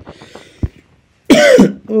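A man coughing twice in the second half, each cough with a voiced sound that falls in pitch; the first is the louder.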